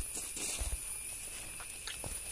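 Soft footsteps and rustling through grass and leafy vine plants, a few light thumps about half a second in and again near the end.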